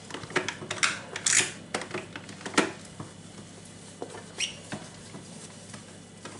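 A damp cloth rubbing in short strokes over the plastic body of a capsule coffee machine, with a few sharp clicks and knocks as the machine is handled and turned. The strokes come mostly in the first three seconds, with one more near the middle.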